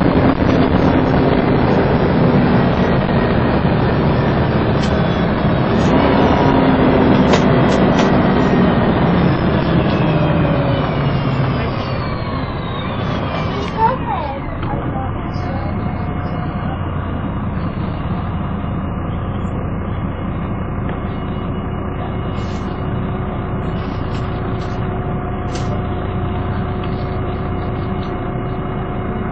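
Onboard a MAN 18.220LF single-deck bus: the diesel engine and drivetrain run loud as the bus slows, with a whine that falls in pitch over the first half. There is one sharp short sound about halfway in, then the bus stands with the engine idling steadily and a few steady whining tones.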